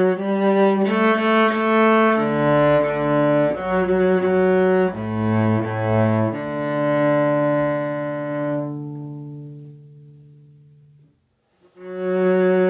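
Cello played with the bow: a simple tune of short separate notes, then one long held low note that slowly fades away, a brief silence, and the playing starts again right at the end.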